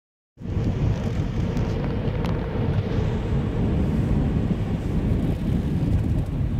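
Steady low rumble of road and tyre noise inside a moving car's cabin on wet, slushy pavement, starting about half a second in.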